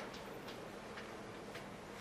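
Faint ticking clicks, roughly two a second, over a low steady room hum.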